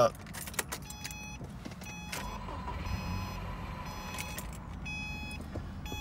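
2008 Subaru Impreza 2.5's flat-four engine started, heard from inside the cabin: a few short high beeps, then the engine catches about two seconds in and settles into a steady idle. It is very quiet on the stock exhaust.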